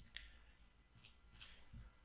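Near silence with about five faint, short clicks spread through the two seconds, from someone working a computer's mouse and keyboard.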